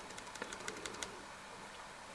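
Computer mouse scroll wheel ticking as it is turned: a quick run of faint clicks over about the first second.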